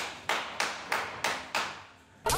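Slow hand-clapping: six sharp claps, evenly spaced at about three a second, each dying away before the next.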